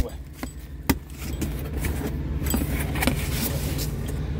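A cardboard shipping box being pulled open by hand, its flaps and packing tape giving a few sharp clicks and light scrapes, over a steady low hum.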